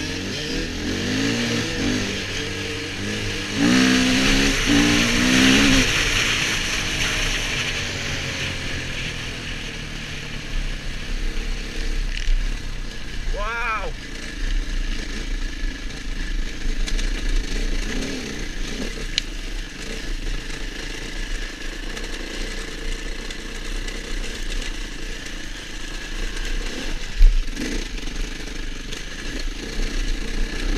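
KTM enduro motorcycle engine heard from on the bike while riding a rough lane: it revs up hard a few seconds in, then runs on at a steadier, lower pace, with a low rumble of wind on the microphone.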